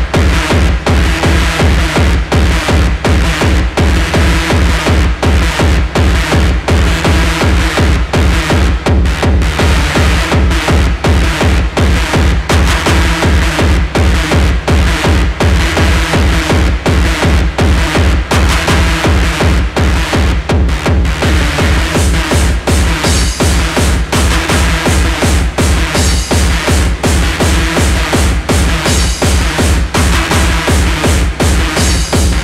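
Hardcore techno (gabber) DJ mix: a fast, steady kick drum with synths over it.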